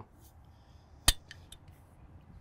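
A single sharp click about a second in, followed by a couple of faint ticks: a driver's adjustment wrench clicking as the sliding CG shifter weight is tightened into the fade position.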